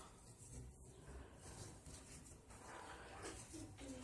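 Near silence: faint room tone with soft, faint rustling of yarn being worked with a crochet hook.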